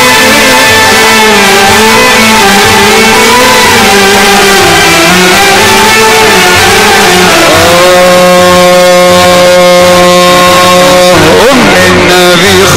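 Loud amplified Middle Eastern music. A melody wanders up and down, then settles about seven and a half seconds in on a long, steady held note that breaks off in a quick slide near the end.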